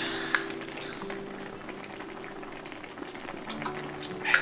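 Hot pot of broth boiling on an electric cooker, a steady bubbling. A brief sharp click comes about a third of a second in.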